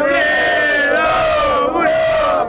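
Crowd of spectators shouting one long held cry together, steady and loud, its pitch sagging slightly before lifting again near the end.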